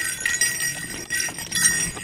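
A small bell on a Saluki's collar jingling several times as the dog moves about.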